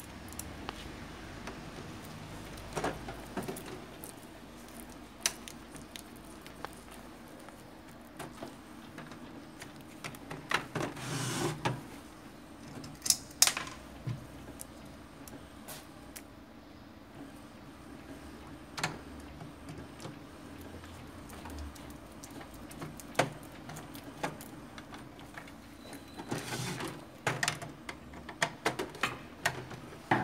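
Scattered plastic clicks and knocks from handling and fitting the ink-reservoir casing of an Epson L120 inkjet printer, bunched around the middle and again near the end, over a faint steady hum.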